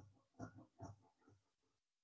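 Faint crunching snips of large tailor's scissors cutting through brocade blouse fabric along a paper pattern, a few strokes about half a second apart.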